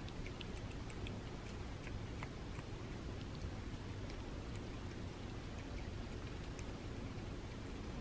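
A domestic cat licking and lapping pureed chicken off a paper plate, making soft, irregular wet clicks over a steady low room noise.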